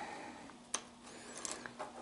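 Quiet room tone with a faint steady hum, broken by one small sharp click about three-quarters of a second in and a few fainter ticks after it.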